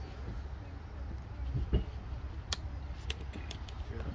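A few sharp clicks in the second half, about four within a second and a half, over a steady low rumble, as equipment is handled.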